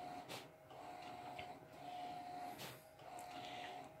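HP large-format printer printing, faint: the print-head carriage whines steadily on each pass across the sheet, four passes of just under a second each with short pauses between, and two brief clicks.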